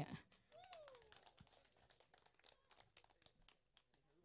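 Near silence, with faint scattered clicks and a brief faint falling tone about half a second in.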